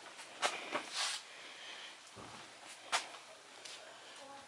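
A few scattered sharp clicks and taps, with a short rustle about a second in and a dull thud past the middle.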